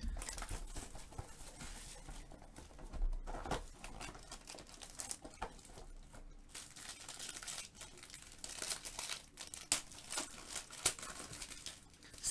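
Plastic shrink wrap being torn and crinkled off a sealed trading-card box, with irregular crackles and a few sharper ones.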